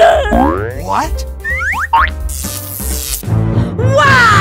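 Cartoon sound effects: quick springy pitch sweeps sliding up and down, over background music with a steady low beat. A whoosh of noise comes just past the middle.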